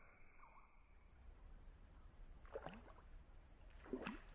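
Faint water splashes of a snakehead striking at a surface frog lure: a short splash about two and a half seconds in and a louder one near the end. A steady, high insect drone runs behind.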